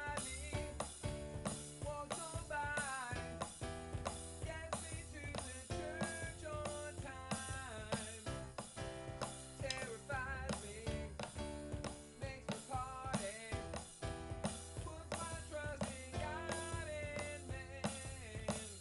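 A man singing a pop song over keyboard chords and a bass line, with a drum kit keeping a steady beat.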